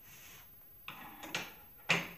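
A few light clicks and knocks of old hair implements being handled and set down on a table, three in all, the last near the end the loudest.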